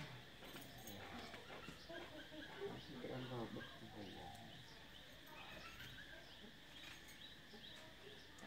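Quiet outdoor background with faint, distant voices and scattered faint chirps.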